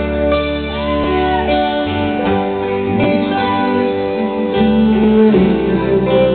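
A live rock band playing an instrumental stretch without vocals, with strummed and plucked guitars to the fore over a steady low bass.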